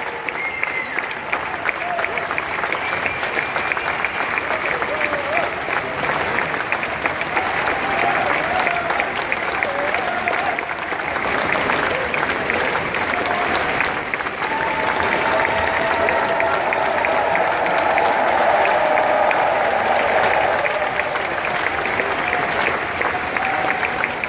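A large concert audience and choir applauding, with voices cheering over the clapping, the cheering strongest in the second half.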